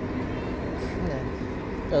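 Steady city street traffic noise with a bus in the road, and a brief hiss near the middle.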